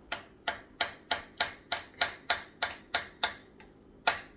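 A spoon clinking against the side of a glass Pyrex measuring cup while stirring thick melted chocolate chips and sweetened condensed milk. About a dozen sharp clicks come in a steady rhythm of roughly three a second and stop shortly before the end.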